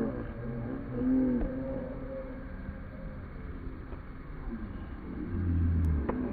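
Field-level match ambience from the camera microphone: a low rumble with faint, wavering distant voices of players early on. A deeper low hum comes in near the end.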